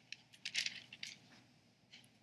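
Faint, crisp rustles and flicks of thin Bible pages being turned, a handful of short separate ticks in quick succession.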